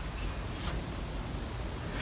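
Faint handling noise as a steel bicycle tube is tilted by hand in a mitering fixture, over a steady low shop hum.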